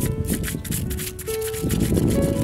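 A thin bamboo stick scraping the charred skin and scales off a grilled snakehead fish in rapid repeated strokes, over background music with held notes.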